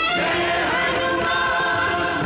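A devotional title theme: a choir singing held notes over music.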